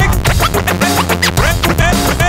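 Hip hop DJ mix with turntable scratching: quick rising and falling pitch sweeps cut in over a steady beat and bass line.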